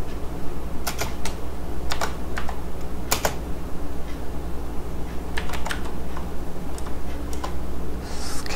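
Computer keyboard keys clicking as code is typed: a scattered, irregular run of keystrokes over a steady low hum.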